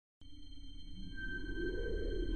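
Cinematic logo-reveal sound design: a set of steady high ringing tones starts suddenly, with a deep rumble swelling beneath them and growing steadily louder as it builds.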